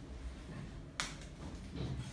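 A crumpled paper ball dropped onto a tile floor, landing with a single light tick about a second in.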